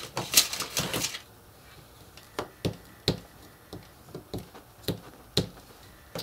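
A few quick rubbing strokes of a burnishing tool over a paper-covered window frame during the first second. After that come about ten separate light clicks and taps as small pieces and tools are handled on a cutting mat.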